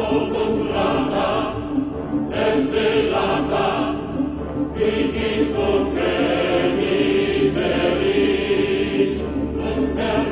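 Choral music: a choir singing sustained notes.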